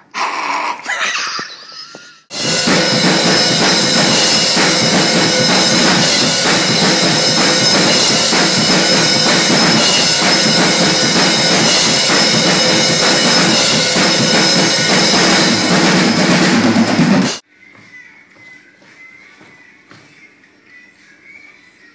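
A short shouted voice, then a drum kit played hard in a small recording room, very loud and dense as heard from a nearby handheld microphone; the drumming starts abruptly about two seconds in and cuts off suddenly near the end.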